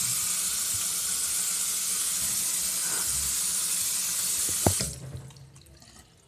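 Bathroom sink faucet running into the basin, a steady rush of water that stops abruptly about five seconds in, just after a sharp knock.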